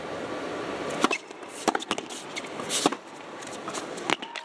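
A tennis rally on an indoor hard court: sharp racket strikes and ball bounces come about once a second over the low hush of an arena crowd.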